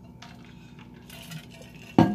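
A man drinking from a black drink bottle: faint sips and swallows, then a sharp click near the end, the loudest sound.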